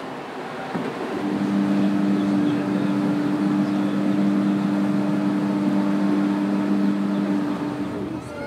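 Car ferry's horn giving one long, steady, low blast of about six seconds, starting about a second in, as the ferry leaves port. It sounds over a steady rush of wind, water and ship noise.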